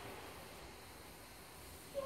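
Faint steady hiss of room tone, with no distinct sound standing out.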